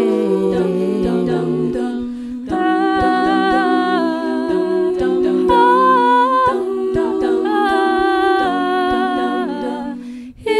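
A cappella vocal group humming sustained, wordless chords in close harmony, the chords shifting every second or so, over soft low thumps keeping a steady pulse. The sound drops out briefly about two and a half seconds in.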